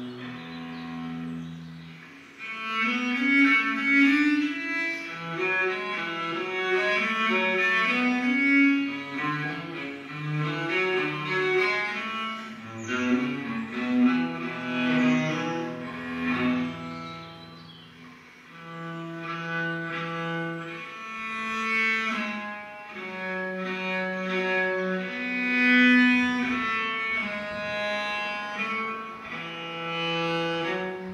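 Solo bass viola da gamba played with the bow: a division on a ground, with variations over a repeating bass line. Quick running notes fill the first half, then after a brief lull past the middle it moves to slower, longer-held notes.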